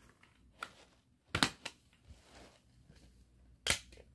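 Plastic CD jewel case being opened and handled: two sharp plastic clicks about a second and a half in, and another sharp click near the end, as the disc is taken out of the case.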